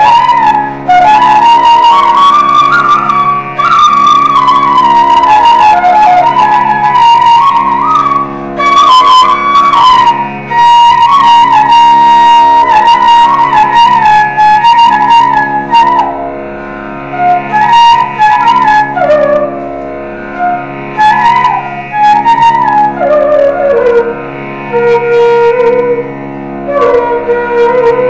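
Carnatic flute playing raga Malayamarutham, its melody gliding and bending between notes over a steady drone. There is one long held note near the middle, and the line falls to a lower register near the end.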